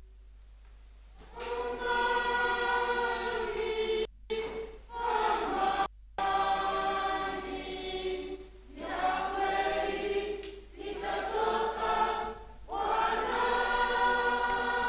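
A choir singing in held phrases with short breaks between them, starting about a second in. The sound cuts out completely twice for a moment.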